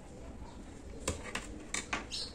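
Faint handling sounds as a crocheted yarn ribbon is folded in two and pressed flat on a tabletop: a few light clicks and taps, one about a second in and a small cluster near the end.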